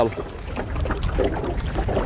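Wind buffeting the microphone outdoors: a steady low rumble with a soft hiss and no distinct events.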